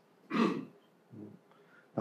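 A man clearing his throat once, about half a second in, followed by a brief, quieter low sound.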